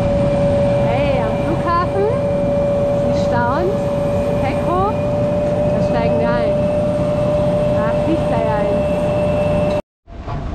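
Loud, steady, single-pitch whine over a heavy low rumble from jet aircraft on an airport apron at night. A young child's voice calls out several times over it.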